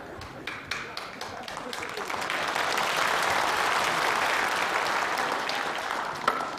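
Studio audience applauding: scattered claps swell into full applause about two seconds in and begin to ease near the end.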